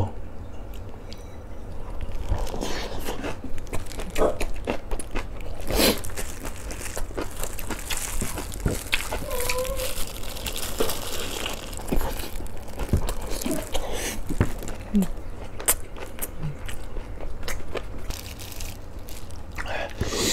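Close-miked chewing and biting of crunchy fresh napa cabbage kimchi and rice, with repeated sharp crunches and mouth clicks.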